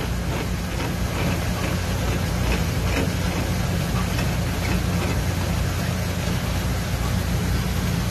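Steady low machinery hum with an even rushing hiss from an evaporative condenser's newly installed water pump running as water fills the unit.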